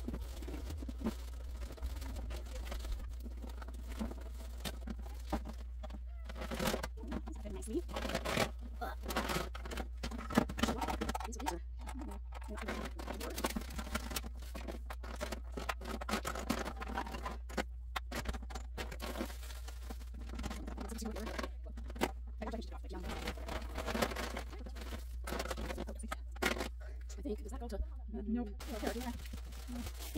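Low, indistinct talk between two people, with light rustling and knocks of toys and bags being handled and sorted.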